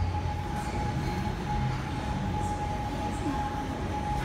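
Steady droning hum with a constant high whine running through it, unchanging throughout.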